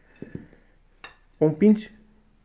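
Loose hexagonal ceramic floor tiles clicking lightly against each other as one is pushed into place by hand: two soft knocks about a quarter second in and a sharper click about a second in.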